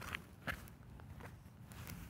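Footsteps of a person walking, a few separate steps roughly half a second apart, with a low rumble of phone handling underneath.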